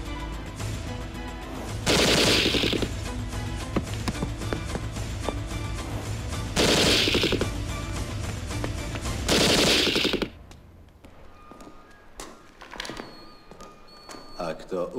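Three bursts of rapid automatic gunfire, each about a second long, over a film score. Near the end the gunfire and music stop and it goes much quieter.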